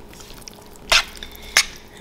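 Metal spoon clinking twice against a metal pan while stirring cubed beef in its cornstarch and soy marinade, about a second in and again just over half a second later.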